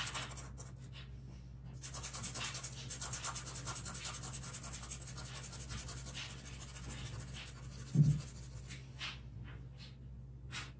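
A pen-like drawing tool rubbing and scratching on paper in quick, short strokes, working charcoal shading. A single low thump about eight seconds in, under a faint steady low hum.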